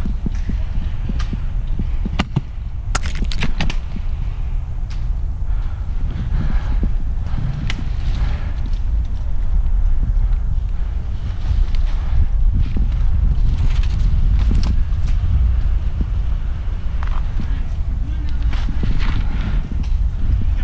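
Wind rumbling on an outdoor action-camera microphone, with scattered sharp clicks and snaps throughout.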